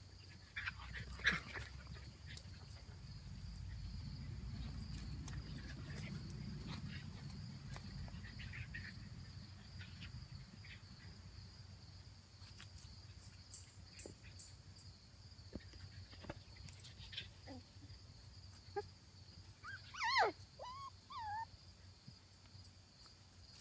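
Shetland sheepdog puppies at play, giving a few short high squeaks about a second in and a quick run of yips and whines near the end, with a steady high insect chirring behind them.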